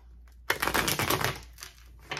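Tarot cards being shuffled by hand: a rapid rattle of cards starts about half a second in, lasts about a second, then tapers off.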